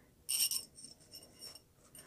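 Light handling sounds of a reusable metal straw and its wire cleaning brush: a short clink with a faint high ring about half a second in, then a few softer clicks and rubs.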